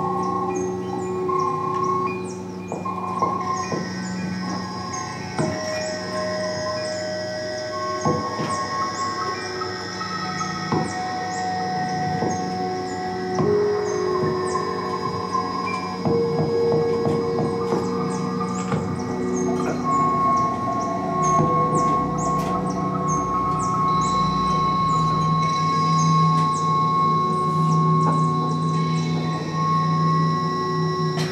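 Experimental electronic music built from field recordings processed live: layered held tones that change pitch every few seconds over scattered clicks and crackle. A low drone swells in the last third, and a high tone enters a little after twenty seconds in.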